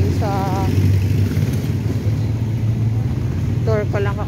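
Steady low rumble of street traffic, with a short voice just after the start and speech beginning near the end.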